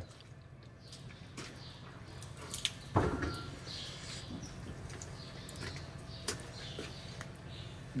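Faint scrapes and small clicks of a hoof knife paring a cow's hoof horn, over a low steady hum.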